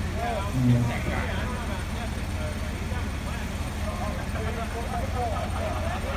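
Forklift engine running steadily under a load, a continuous low hum, with a brief louder low sound about half a second in. Voices of the crew talk over it.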